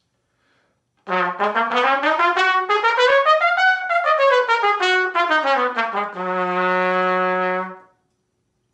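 Solo trumpet playing a quick run of separate notes that climbs and then falls back down, ending on a long held low note.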